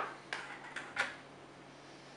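A few light clicks and taps of small kitchen containers being handled: a seasoning container's lid is set down beside a small bowl of salt. There are three short clicks in the first second, the last the loudest, then it goes quiet.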